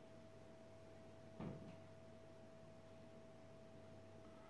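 Near silence: room tone with a faint steady high tone throughout, and one brief soft sound about a second and a half in.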